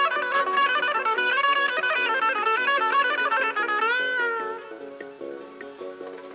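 Electric guitar playing a fast lead melody of quick picked notes. About four seconds in, a note is bent and held with vibrato, then the playing turns quieter and sparser.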